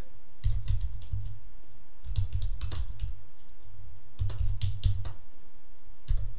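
Typing on a computer keyboard, irregular keystrokes coming in short bursts with brief pauses between them.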